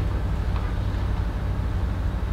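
Steady low rumble of a room air conditioner, running without change under a pause in the talk.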